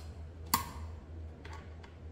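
A metal hand tool clicks sharply against the rear brake caliper's mount bolt about half a second in, with a short ring, then clicks faintly again about a second later. A low steady hum runs underneath.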